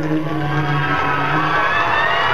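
Live band music from a concert: a slow ballad with low notes held steady for about a second and a half, then easing off.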